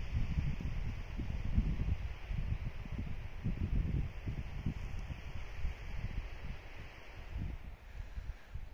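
Wind buffeting the microphone in uneven gusts: a low, irregular rumble over a faint steady hiss.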